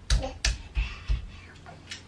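A rapid, regular series of sharp knocks, about three a second, from a toddler's hands slapping the cot's top rail. The knocks stop a little past a second in.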